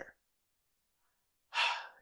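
A man's audible breath, about half a second long near the end, after a second of dead silence.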